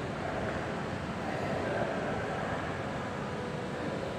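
Steady indoor background noise with faint, indistinct voices murmuring.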